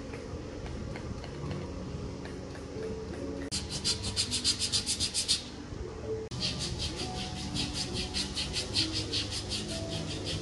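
Fast, even rasping strokes, about eight a second, of a hand tool scrubbing or filing the skin of a bare foot. They come in two runs: one starts about three and a half seconds in and lasts two seconds, the other starts just past six seconds and keeps going. Soft background music with held notes plays underneath.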